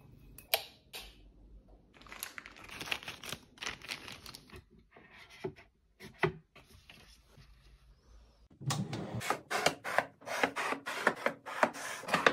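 Close-miked handling sounds of household items being fitted: scattered light clicks and rustling. About three-quarters of the way in, a quicker run of sharp clicks and knocks of hard pieces being set in place.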